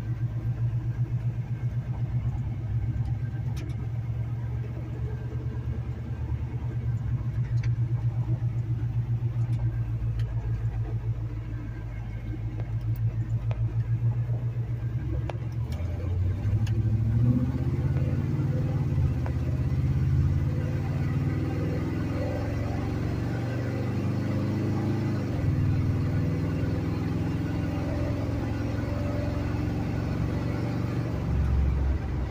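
1978 Chevrolet C10 pickup's engine heard from inside the cab. It runs at low revs with an even pulse for about the first half. Then it accelerates onto the road, its pitch rising and dropping back a couple of times as it goes up through the gears, and settles into a steady cruise around 2,500 rpm.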